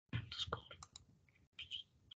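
Faint clicking from a computer mouse and keyboard near the microphone, with quiet breathy muttering. The sound cuts in abruptly and drops out briefly about a second and a half in.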